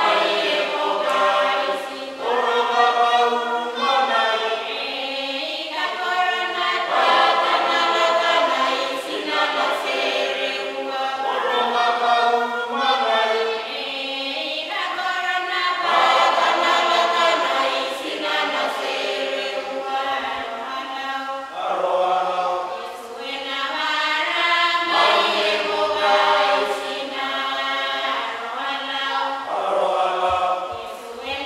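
A mixed choir of men's and women's voices singing in parts without instruments, in phrases a few seconds long with short breaks between them.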